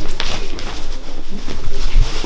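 Two grapplers scrambling on foam mats: bodies scuffing and knocking against the mat, with grunts and hard breathing.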